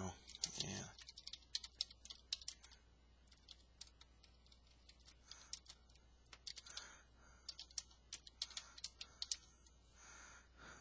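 Faint typing on a computer keyboard: irregular runs of keystroke clicks with short pauses between them.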